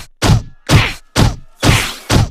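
Cartoon punch sound effects: a steady run of sharp whacks, about two a second, each dropping in pitch as it fades.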